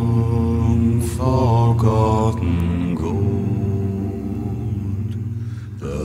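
Deep male voices singing a slow, chant-like song in low unison, with long held notes.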